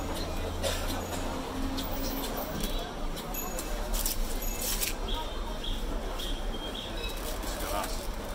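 Indistinct voices and busy market background, with scattered short clicks and crackles from glass phone-screen panels and protective plastic film being handled.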